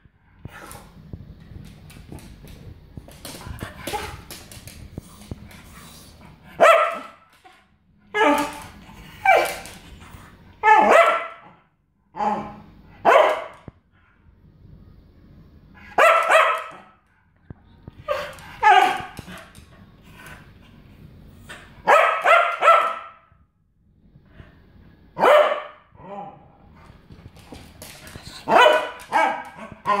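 A dog barking at its owner for a treat: about a dozen short, high barks, some in quick pairs or runs, with pauses of a second or more between them.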